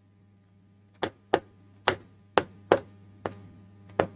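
About seven sharp, separate clicks or taps at uneven intervals, starting about a second in, over a faint steady hum.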